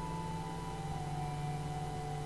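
Soft organ music: low chords held steady, with a slow melody stepping down in pitch over them.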